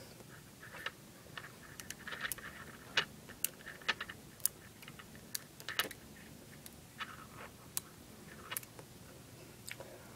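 Small Neocube neodymium magnet beads clicking as a strand of them is wrapped by hand around a ball of beads, each bead snapping onto the others. The sharp clicks come irregularly, one or two at a time, throughout.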